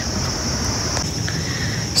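Insects droning in a steady high-pitched trill, over a low rumble of wind on the microphone.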